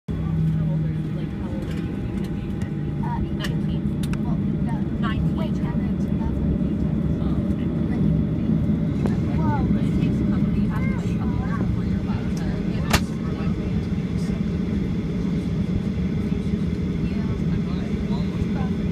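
Cabin noise of a Boeing 737 taxiing: a steady low rumble from the jet engines at taxi power, heard through the fuselage. Faint background voices run through it, and a single sharp click comes about thirteen seconds in.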